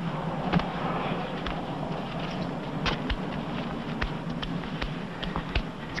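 Shovels digging in beach sand, with a scattered, irregular run of sharp clicks and scrapes over a steady low hum.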